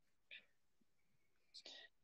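Near silence, with two faint, brief snatches of a voice: one about a third of a second in and one near the end.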